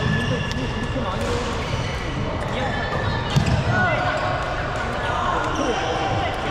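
Badminton rally in a large, echoing hall: sharp racket-on-shuttlecock hits, the loudest about three and a half seconds in, with brief sneaker squeaks on the court floor. Voices chatter in the background.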